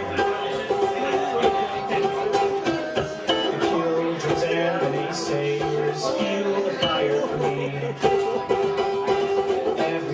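A man singing a song while strumming a ukulele, the strummed chords running on under a held, stepping vocal melody.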